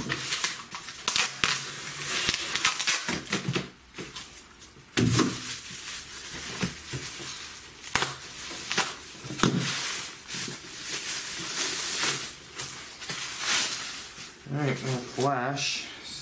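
Bubble wrap and plastic wrap crinkling and tearing as a box cutter slices open a wrapped bundle, with many short, sharp crackles and rustles.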